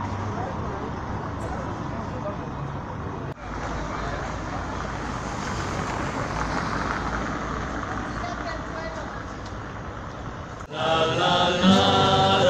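Street ambience at night: a murmur of voices and traffic noise, with an abrupt cut a little over three seconds in. Near the end a rondalla starts playing, guitars and a double bass with voices singing, clearly louder than the ambience.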